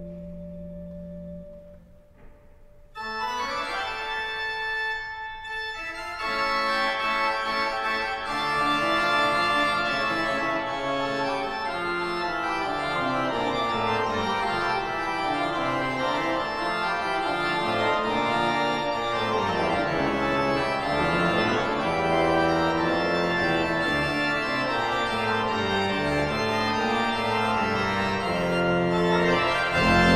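Pipe organ playing: a soft held chord dies away about two seconds in, and after a short break a new passage begins about a second later, growing fuller and louder from about six seconds, with a moving bass line beneath the chords.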